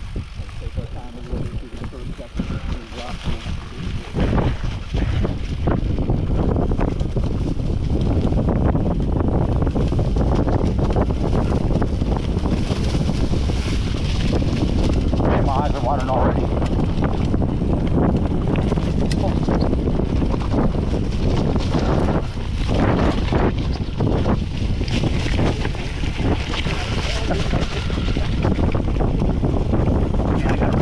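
Wind rushing over the camera microphone while a mountain bike rolls fast downhill over loose rock and dry grass, with steady rumbling and rattling from the tyres and bike. It gets louder about four seconds in as the bike picks up speed.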